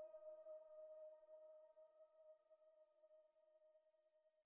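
Near silence: the last held note of the background music, a single steady tone that fades away.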